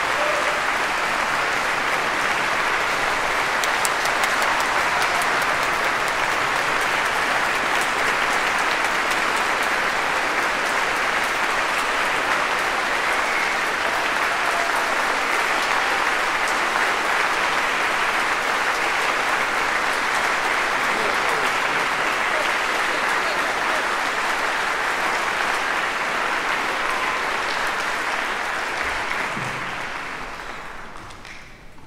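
Audience applauding steadily, a dense clapping that dies away at the end.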